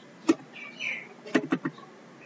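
Computer keyboard keystrokes: a few sharp, irregular key clicks, with three in quick succession a little past halfway.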